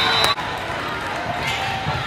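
Indoor volleyball game noise: the ball being struck, with spectators talking in a reverberant gym. The sound breaks off abruptly about a third of a second in at an edit, then goes on as similar court noise.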